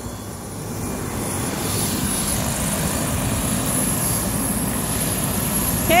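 Air-ambulance helicopter running on the ground with its rotor turning as it gets ready to lift off. A steady rushing drone grows louder over the first couple of seconds and then holds, with a thin high whine over it.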